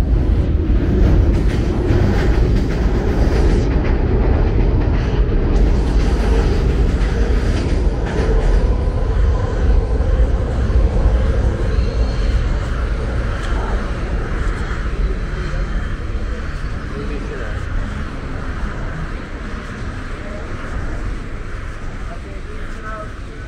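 Elevated Market-Frankford Line train rumbling along the overhead steel track, a loud steady rumble that grows gradually fainter over the last several seconds as it moves off.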